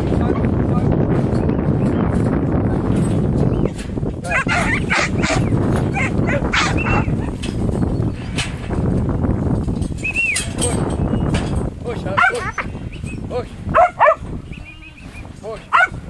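Wind buffeting the microphone, then a young black-and-tan kelpie barking in short, repeated barks as it works sheep in a yard. The loudest barks come in the last few seconds.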